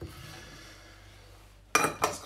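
Faint room noise, then a single sharp clink of kitchen crockery and utensils near the end as the chopped-basil bowl is handled.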